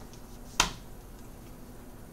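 One sharp hand snap about half a second in, over a faint steady room hum.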